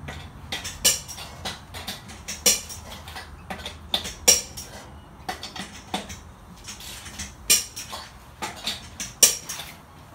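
Irregular sharp metallic clinks and clatters, a couple a second, some much louder than others, over a faint low hum.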